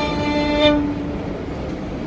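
A violin's last held notes end about two-thirds of a second in, leaving the steady rumble of a subway car running.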